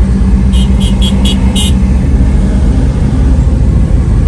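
Road traffic in a slow-moving jam: a steady, loud low rumble of vehicle engines close by, with a quick run of five short high-pitched sounds about half a second in.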